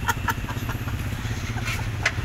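A small motor vehicle's engine running steadily close by, a low, even rumble of street traffic.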